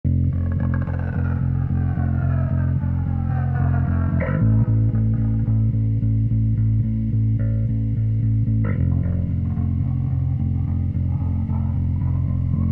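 Instrumental intro of a shoegaze/noise-rock song: bass and electric guitar play a steady, quickly repeated picked figure. A slide leads into a new chord about every four and a half seconds, and falling guitar glides run through the first few seconds.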